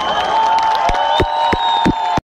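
Live concert crowd cheering as a song ends, with one long high note held over it and several sharp hits in the second half.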